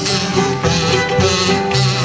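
Live jug band playing an instrumental passage: a fiddle with a banjo and guitars strumming and picking over a steady pulsing low line.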